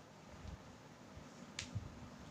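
Quiet room tone with one short, sharp click about one and a half seconds in, and a few faint low thuds.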